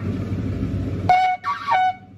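Yemenite kudu-horn shofar blown for its high E: a rough low buzz for about a second, then the high note speaks in two short blasts with a brief break between them.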